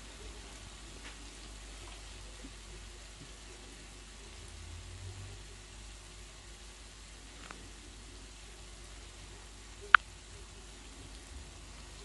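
Puff-puff dough balls deep-frying in a pot of hot vegetable oil, a steady sizzle throughout. One sharp click sounds about ten seconds in.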